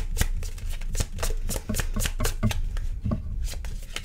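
Tarot cards being shuffled by hand: a quick, irregular run of card flicks and snaps, several a second, thinning out near the end.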